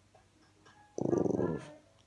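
French bulldog giving one short, low vocal sound about halfway through, lasting about half a second and starting suddenly.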